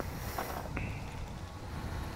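Low, uneven rumble of wind on the microphone on an open boat, with a faint short high tone about three-quarters of a second in.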